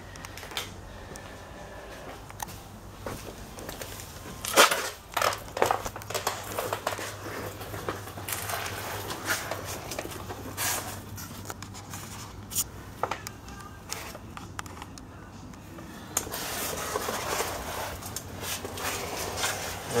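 Scattered knocks, scuffs and rustles of a person moving about and getting down on a concrete floor to look under a pickup truck, the sharpest knocks about four and a half seconds in, over a steady low hum.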